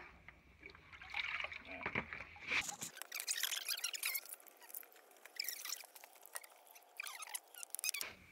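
Water splashing and trickling as a hand swishes through muddy pit water, rinsing mud off a large quartz crystal, with irregular drips and small splashes.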